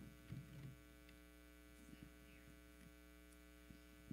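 Near silence with a steady electrical mains hum, and a few faint knocks about half a second in and again near the end.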